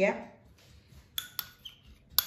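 A metal spoon clinking against a china cup: two sharp clinks about a second in, a fraction of a second apart, each leaving a short ringing tone, then a fainter tap near the end.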